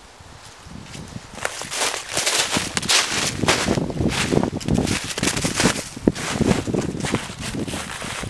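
Footsteps crunching through a thin layer of snow over dry fallen leaves, a dense run of irregular steps that builds up about a second in.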